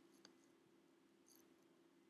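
Near silence: faint room tone with a steady low hum, and one faint computer mouse click about a quarter of a second in.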